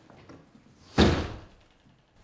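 A glass-paned exterior door pulled shut about a second in: one sharp impact that dies away within about half a second.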